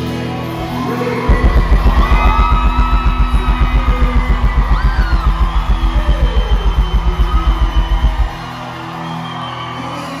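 Live music through a festival PA: a fast, even low beat, about seven pulses a second, comes in about a second in and stops suddenly near the end, with a voice singing long gliding notes over it.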